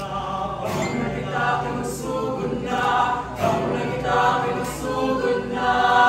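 A musical-theatre ensemble of several voices singing together in phrases about a second long, over a steady low sustained backing.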